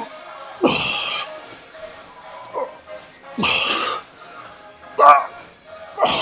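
A man's strained grunts of effort as he pushes reps on a chest press machine: three short, loud bursts, the middle one the longest, with music playing in the background.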